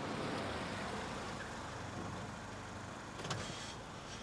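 A car driving up, its engine and tyres making a steady rushing noise, with a brief click about three seconds in.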